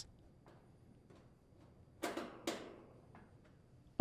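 Faint clicks of a hand screwdriver turning a screw into the sheet-metal top grill cover of an AC condensing unit, then two short, louder noises about half a second apart near the middle.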